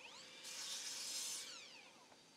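Evolution mitre saw making one cut through a board: the motor whines up in pitch, the blade cuts for about a second, then the whine falls away as the saw spins down. It is faint in the mix.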